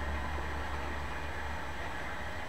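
Steady low hum with an even hiss over it: background room and recording noise. It eases slightly about halfway through.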